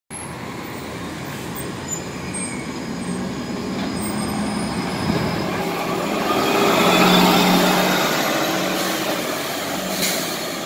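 A 2018 New Flyer XDE60 articulated diesel-electric hybrid bus pulling away from a stop and passing close by. Its drive grows louder to a peak about seven seconds in, with a faint rising whine, then fades as it moves off.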